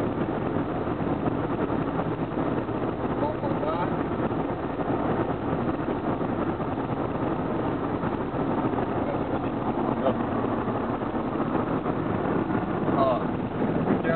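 Steady road and engine noise inside a car cruising at highway speed.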